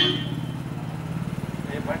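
A small engine running steadily with a low, evenly pulsing hum. A high ringing tone fades out at the start, and a man's voice begins near the end.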